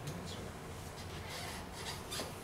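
Papers rustling and rubbing as they are handled, in soft scraping strokes that grow stronger near the end.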